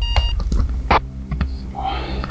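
Electronic alarm beeping, about two beeps a second, going off for a 3 a.m. wake-up; it stops after one last beep at the start. Then come a few knocks, the loudest about a second in, and rustling of bed sheets near the end.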